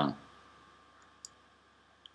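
A man's drawn-out "uh" trailing off at the start, then a pause of faint room tone broken by one small click a little after a second in.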